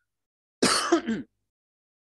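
A man clearing his throat once, briefly, into a close headset microphone.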